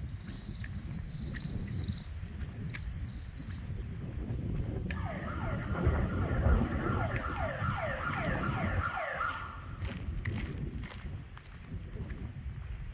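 A siren sounding in quick repeated pitch sweeps, about two a second, starting about five seconds in and stopping about four seconds later, over a steady low rumble.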